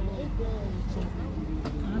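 Background voices of people talking, with no clear words, over a steady low rumble.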